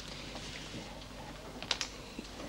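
Quiet room tone with light scattered clicks and taps, two sharper clicks close together near the end.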